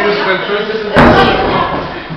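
A single sharp knock about a second in: a climber striking the plywood panel of an indoor bouldering wall as he moves between holds.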